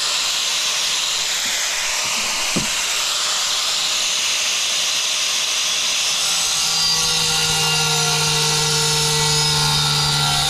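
Handheld angle grinder with a diamond blade running and cutting into a black porcelain floor tile, a steady loud hiss with a single sharp click about two and a half seconds in. From about six seconds in, a steady humming tone joins the hiss.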